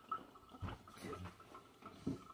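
Faint wet sounds of small hands rubbing wet hair over a salon shampoo bowl, with soft scattered ticks and drips.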